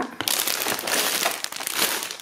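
Shiny plastic sweet bags crinkling and rustling as they are handled and shifted about, a continuous crackly rustle with no voice.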